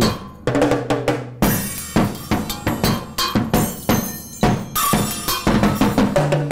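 Drum kit played with sticks in a steady beat of strikes, about two to three a second. A low drum rings under the first hits, and cymbals join in about a second and a half in.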